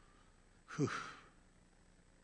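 A man's single breathy sigh, a 'whew' that falls in pitch, about a second in.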